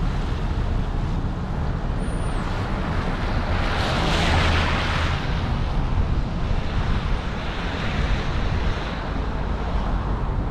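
Low rumble of a car moving slowly, with wind on the microphone and a rush of noise that swells and fades about four seconds in.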